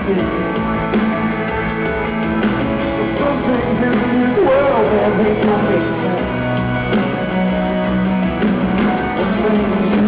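Live rock band playing: grand piano, electric guitar and drums, with some singing.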